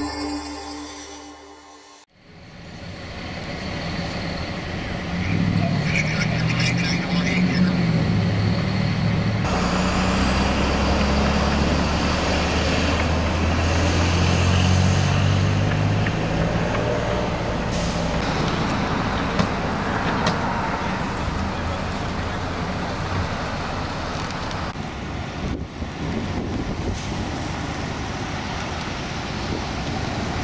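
Street traffic and vehicle engines running, with a deep engine drone strongest in the first half; the end of a music track fades out in the first two seconds.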